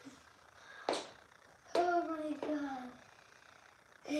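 A short sharp noise about a second in, then a brief high voice sound that falls in pitch: a girl whimpering over hands numb from the cold snow.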